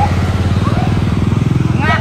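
A motorcycle engine running steadily close by, a fast even putter, with voices calling out over it and a short rising shout near the end.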